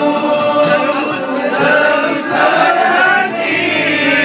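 A group of young men singing a Malay song together, unaccompanied.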